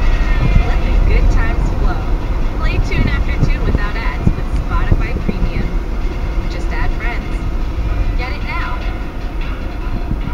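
Steady low rumble of a car's tyres and engine heard inside the cabin while driving, with intermittent indistinct voice-like sounds over it.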